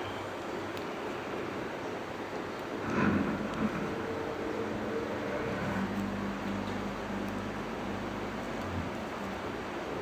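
Steady background noise like distant traffic or wind, swelling briefly about three seconds in, then joined by a low droning hum that fades out near the end.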